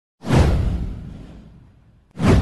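Whoosh sound effect: a single swoosh that starts a moment in, sweeps downward in pitch with a deep low rumble under it, and fades away over about a second and a half.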